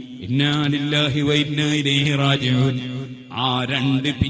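A man's voice chanting in a melodic recitation style, with long held pitches and a brief break about three seconds in.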